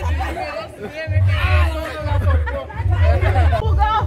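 Several people chatting over one another, over background music with a low bass line.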